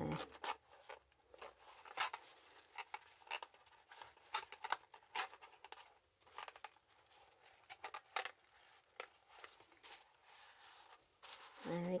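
Thin acetate tube and cardstock tray being squeezed and slid together by hand: light rustling and scraping with irregular small clicks.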